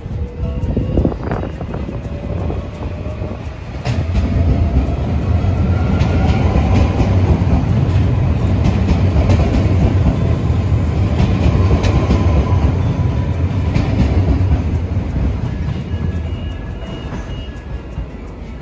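NS double-deck electric passenger train passing close along the platform track. A heavy rumble builds about four seconds in and holds with scattered wheel clicks and a faint whine, then fades over the last few seconds as the train moves away.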